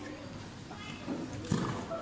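Sparring-bout noise: people shouting during a silat match, with a loud dull thud about one and a half seconds in as a blow lands or a foot hits the mat.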